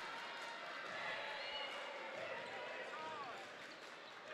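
Faint gym sound during a basketball game: a ball being dribbled on the hardwood court, with faint voices in the hall.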